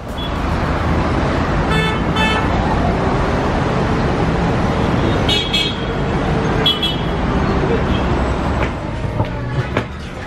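Busy road traffic: a steady rumble of cars and buses, with several short horn toots about two seconds in and again between five and seven seconds.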